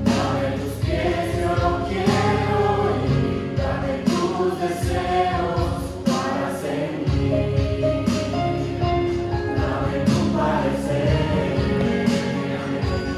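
A mixed vocal group of men and women singing a Christian worship song together through handheld microphones, over a steady instrumental accompaniment with sustained low notes.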